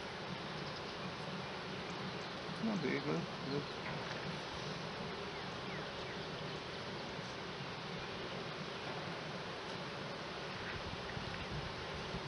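Honey bees buzzing as a steady hum over an opened hive, which swells briefly about three seconds in.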